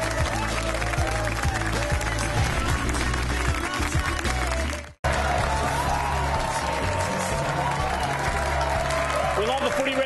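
Studio audience applauding and cheering over the show's theme music, as at a break in a TV show. The sound cuts out suddenly about halfway through, then the music and applause resume.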